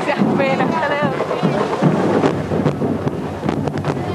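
Street carnival parade noise: voices close to the microphone at first, then a busy mix of crowd and music with a few sharp knocks in the second half.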